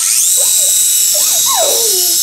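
Small electric motors of a Minion toy helicopter spinning its two rotors: a steady high-pitched whine that starts suddenly as the toy is switched on and is held in the hand.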